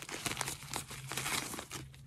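Doll's printed garment bag crinkling as it is handled and the overskirt is pulled out of it, a dense run of small crackles.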